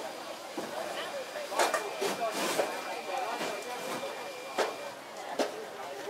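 Several people talking at once, with a few sharp knocks scattered through, the loudest about one and a half and two and a half seconds in.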